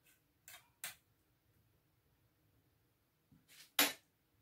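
Mostly quiet, with a few short soft scraping noises from a spoon working mayonnaise in a dish. Three fall in the first second, and a sharper, louder one comes near the end.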